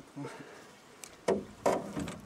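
A short laugh, then two sharp knocks in quick succession about a second and a half in.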